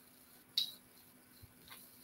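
Quiet room with a faint, sharp click about half a second in, then two fainter ticks, as thin gold-coloured craft wire is handled against a ruler.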